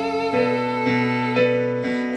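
Electronic keyboard with a piano sound playing held chords live, the chord changing about three times in a couple of seconds, with no voice over it.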